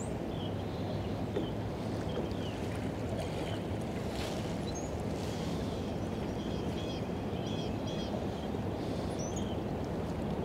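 Steady wind and water noise around a small drifting fishing boat, with faint bird chirps now and then, most of them in the second half.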